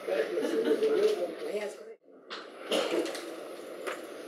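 Indistinct talk from people in the room, quieter than the main speakers, broken by a sudden gap in the sound about two seconds in.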